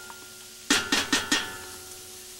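A wooden spoon knocks and scrapes inside a small metal can of tomato paste, about five quick knocks starting a little under a second in, as the paste is dug out into the pot.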